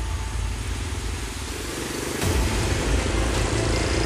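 Small motorcycle engines running as the bikes ride along a rough dirt road, getting louder about halfway through as one comes closer.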